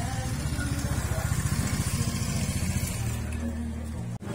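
An engine running close by: a steady low drone with a fast, even pulse.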